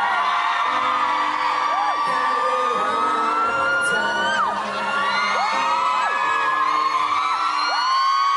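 Male singer holding a long sung line over the backing track of a Thai pop ballad, the note ending about four seconds in, while fans scream and whoop over it throughout.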